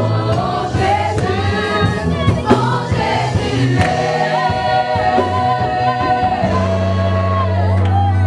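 A group of worshippers singing a gospel worship song together, over long sustained low notes from the accompaniment.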